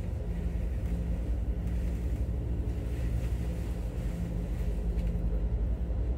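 A steady low mechanical hum that does not change.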